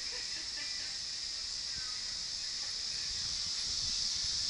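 Steady high-pitched drone of summer insects.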